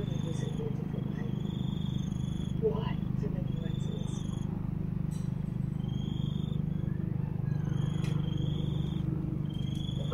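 Bell 412EP twin-turbine helicopter passing overhead: a steady low drone with a fast, even pulse from its four-blade main rotor. Faint short high chirps repeat over it.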